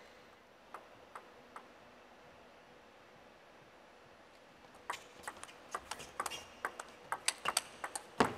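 Plastic table tennis ball: three faint ticks in the first two seconds, then from about five seconds in a rally of sharp, quickening clicks as the ball strikes the table and the rubber-faced paddles.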